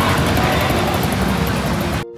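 Steady road traffic noise of a busy city street, with vehicle engines running close by.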